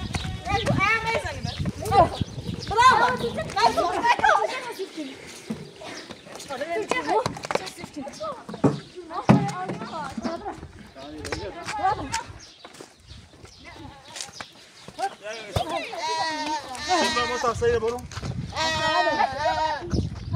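A goat bleating, with two long, quavering bleats near the end, over people talking.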